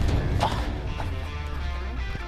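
Heavy sheet-metal garage gates creaking on their hinges as they are swung open, stiff to move, with a knock about half a second in. Background music runs underneath.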